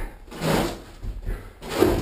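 Razor-blade utility knife slicing through carpet, two noisy strokes about a second apart.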